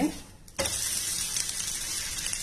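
Oats-and-gram-flour chilla frying in a little oil in a nonstick pan over a low flame: a steady, even sizzle. It starts suddenly about half a second in, after a brief quiet moment.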